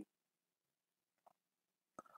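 Near silence, with a single faint tick a little past a second in.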